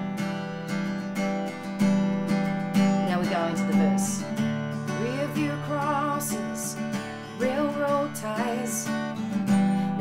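Maton acoustic guitar strummed softly and lightly, alternating between a D chord and an E minor that keeps a D note on the B string's third fret. Light strums come about once a second and the chords ring on, with the change of chord about halfway through.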